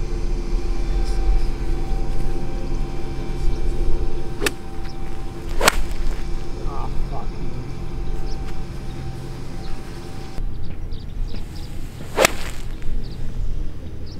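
Two golf shots, each a sharp click of an iron striking the ball off fairway turf: one a little under six seconds in, the other about twelve seconds in. A steady low hum runs underneath.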